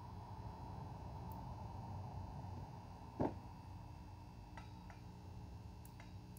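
Faint steady electrical hum and hiss from the running high-voltage RF equipment, with one short sharp sound a little over three seconds in.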